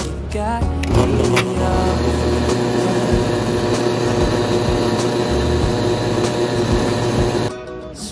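Commercial coffee grinder running steadily as it grinds beans into a brew basket. It starts about a second in and cuts off suddenly shortly before the end. Background music plays over it.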